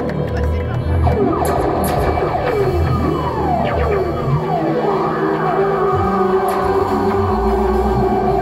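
Live band music played through a concert PA, with a held keyboard-like tone and bass under a run of falling pitch glides in the first half.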